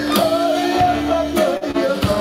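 Klezmer band playing an up-tempo number, with violin and trombone carrying a wavering melody over accordion, upright bass and steady drum hits.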